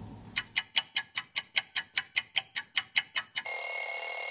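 Edited-in clock sound effect marking time passing: a clock ticking quickly, about seven ticks a second, then an alarm-clock bell ringing from about three and a half seconds in.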